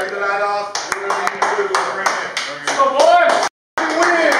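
A group of people clapping together in a quick, even rhythm, about four claps a second, with shouting voices over the claps. The sound cuts out briefly near the end.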